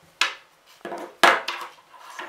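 Small hard objects knocked and set down on a wooden tabletop: about four short sharp knocks, the loudest a little past halfway.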